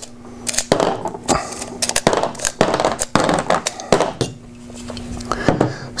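Steel-cased 9mm cartridges being thumbed one by one out of a steel pistol magazine, each round clicking free and clinking onto the table and the other loose rounds. The clicks come at irregular intervals, with a short pause about four seconds in.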